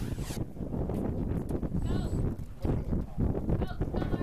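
A news transition swoosh ending within the first half-second, then wind and handling noise on an outdoor live microphone with scattered knocks and shuffling.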